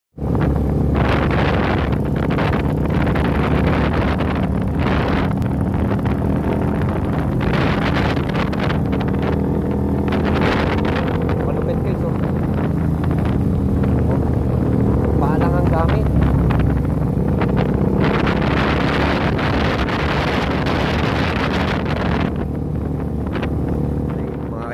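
Motorcycle engine running at a steady speed while riding, with heavy wind buffeting on the microphone that swells and fades in gusts.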